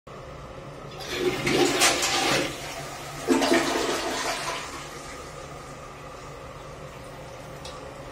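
Toilet flushed with its dual-flush push button: water rushes from the cistern into the bowl in two loud surges, about a second in and again just past three seconds, then dies away by about five seconds.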